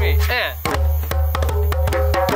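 Several hand-played djembes in a group rhythm: deep bass tones under quick, sharp slaps and tones, the strikes coming many times a second. A voice calls out briefly near the start.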